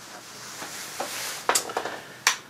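Handling noise: a rustle that grows louder over the first second and a half, with a few sharp clicks about a second and a second and a half in, as a tablet is held and moved about.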